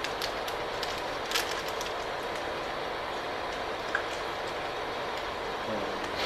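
Steady hiss of room noise in a lecture hall, with a few small clicks in the first second and a half and one more tick a little before the end.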